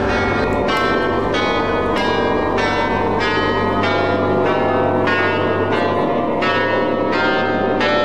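Dramatic background score: a run of bell-like chimes struck about two a second over a steady low drone.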